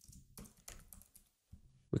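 Faint computer keyboard typing: a quick string of several separate keystrokes as a word is typed.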